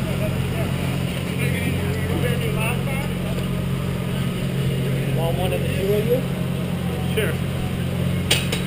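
A steady low hum that holds one pitch throughout, with faint voices talking in the background.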